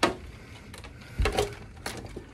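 Light clicks and knocks of an object being handled and pushed into place on a shelf: a sharp click at the start, a louder knock just past the middle, and another short click near the end.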